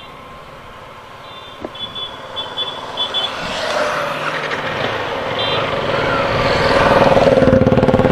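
Yamaha R15 V3's single-cylinder engine pulling away from a standstill, its sound and the rushing wind growing steadily louder as the bike gathers speed. A run of short high beeps sounds in the first three seconds, with one more partway through.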